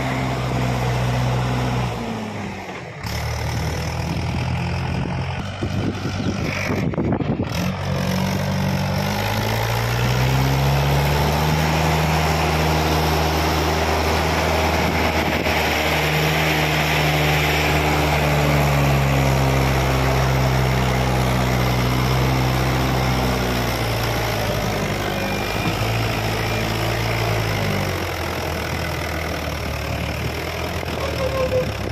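Diesel engine of a Mahindra 475 tractor pulling a fully loaded trailer. It runs steadily with two brief breaks in the first eight seconds, climbs in pitch about ten seconds in, holds there, then drops back a few seconds before the end.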